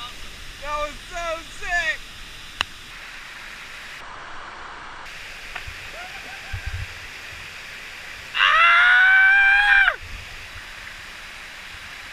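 Whitewater rushing steadily down a steep creek slide. Several short whoops come in the first two seconds, and a long high yell of about a second and a half comes near the end, the loudest sound.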